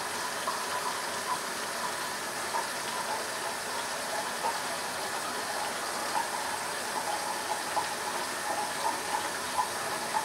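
Hot water tap running steadily into a sink, with short faint scratches from a butterfly double-edge safety razor cutting through lathered stubble, stroke after stroke.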